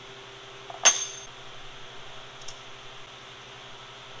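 A single sharp metallic clink with a brief high ring, about a second in, as steel knocks against steel at a metal lathe's chuck while stock is being set up in it. A fainter tick follows a little later, over a steady low hum.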